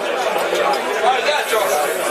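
Many people talking at once: a steady crowd chatter, with no single voice standing out.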